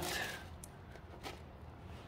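Faint handling noise of a foam-board glider wing being bent and pressed by hands, with a couple of light ticks, over a low steady hum.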